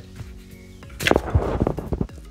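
Background music playing steadily, with a loud burst of rustling and knocking about halfway through as the hand-held phone is handled and turned round.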